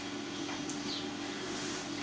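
Quiet room tone with a steady low hum, and a few faint soft clicks, one about half a second in.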